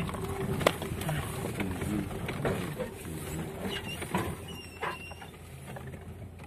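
Cabin sound of a Lada Niva crawling over a rocky track: the engine runs low and steady under repeated knocks and rattles as the wheels and body jolt over stones, the sharpest knock less than a second in.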